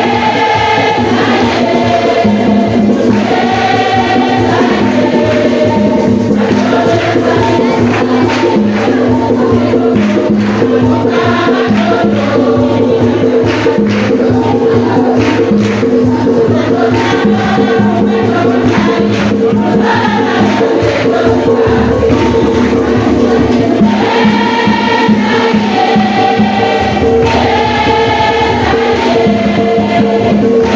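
Church choir singing a hymn, with shaken percussion keeping time.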